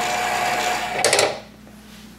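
Bottle labeling machine running with a steady motorised whir as it feeds a date-coded label onto a small bottle and spins it on. A few clicks come about a second in, and the machine stops shortly after.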